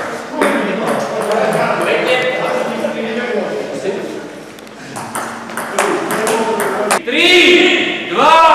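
Table tennis ball clicking repeatedly off paddles and table during play, over people talking in a hall. Near the end, loud voices call out.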